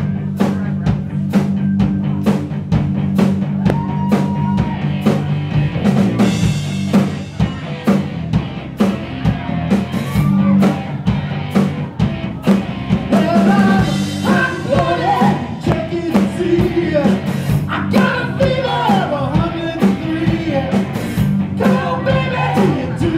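Live rock band playing: a steady drum-kit beat over bass and electric guitar, with lead vocals coming in about halfway through.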